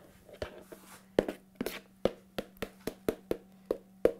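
Irregular run of about a dozen sharp clicks and taps, from hands handling kitchen containers and utensils. They start about a second in and stop shortly before the end.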